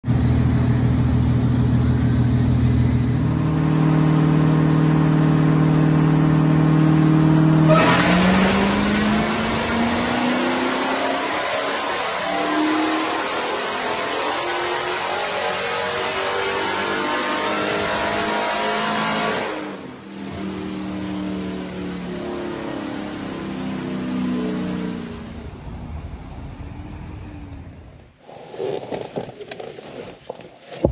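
Dodge Charger SRT Hellcat's supercharged V8 running steadily, then about eight seconds in a long wide-open-throttle pull on a chassis dyno, very loud, with the pitch climbing for about eleven seconds before it cuts off. Lighter revving follows, and there are quieter clicks and knocks near the end.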